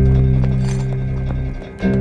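Dark trailer music: a deep, sustained low chord that fades and is struck again just before the end, with a few faint knocks over it.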